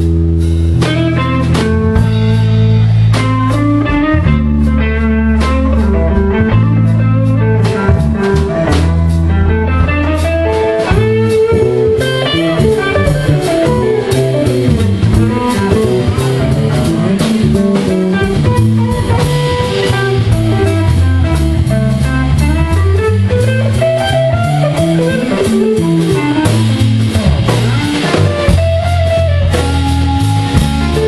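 Live instrumental passage: an archtop electric guitar plays a melodic lead line through an amplifier, with a bass line and drum kit behind it.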